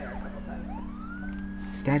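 Police siren wailing: one slow rise in pitch, then a long, gradual fall, over a steady low hum.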